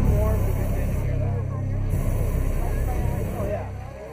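A pickup truck's engine running low as it rolls slowly past, with crowd chatter over it.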